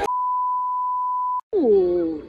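A steady single-pitch censor bleep dubbed over the recording, lasting about a second and a half and then cutting off abruptly. Near the end, a short pitched sound glides sharply downward.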